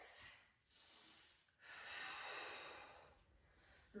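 Faint breathing of a woman exercising with a resistance band. There is a short breath at the start, a fainter one about a second in, and a longer one from about one and a half to three seconds.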